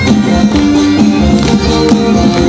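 Live folk band music: bagpipes with a held drone under the melody, a small pipe and a plucked string instrument, over a steady beat.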